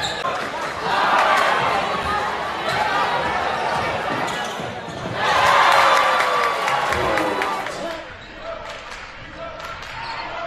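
Basketball game sound in a gym: a ball bouncing on hardwood under crowd noise and voices. The crowd noise swells about a second in and again more loudly around five seconds in, then drops lower near the end.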